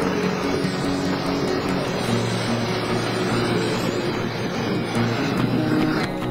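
Busy city street traffic, motor scooters and cars passing close by, mixed with background music that has long held notes.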